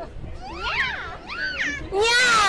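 Young people calling out "nya", an imitation of a cat's meow, in two drawn-out calls that rise and fall in pitch.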